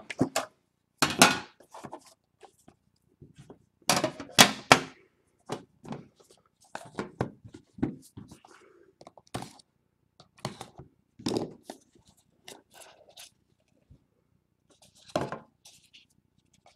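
Hands opening a trading card box and handling the cards inside: a string of separate short taps, rustles and scrapes, louder near the start and around four seconds in.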